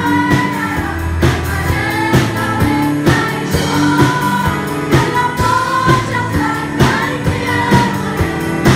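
Several women singing a Vietnamese hymn together into microphones over a live band, with drums keeping a steady beat.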